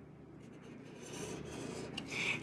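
Faint scratching of an embossing pen's tip drawing an outline on textured watercolour paper, growing a little louder about a second in.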